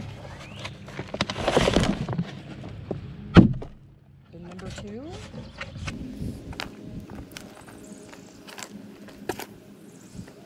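Damp leaf-litter bedding tipped into a plastic tub, a rushing, rustling slide followed by one heavy thump about three and a half seconds in. Then softer rustling and light ticks as a hand works through the loose bedding.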